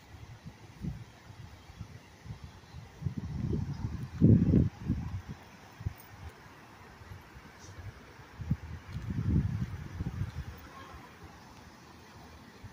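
Wind buffeting a phone's microphone in two low rumbling gusts, the first the louder, over a faint steady background hiss.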